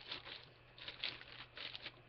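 A series of short, faint plastic crinkles and rustles: a plastic model-kit sprue being handled in its plastic bag.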